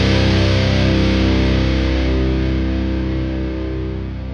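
A final distorted electric guitar chord left ringing out at the end of a metal song, slowly fading away.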